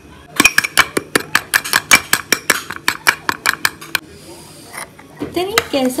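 Metal spoon clinking fast against the sides of a mug while stirring soya milk powder into liquid, about six clinks a second, stopping about four seconds in.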